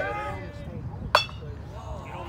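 A metal baseball bat hits a pitched ball once, about a second in: a single sharp ping with a brief ring, from a base hit to the opposite field. Faint chatter from players and spectors is under it.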